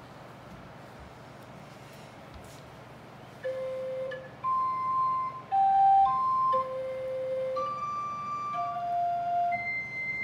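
Small wooden Orgelkids kit organ played one key at a time: after about three and a half seconds, about eight single flute-like pipe notes of different pitches sound one after another, each held briefly.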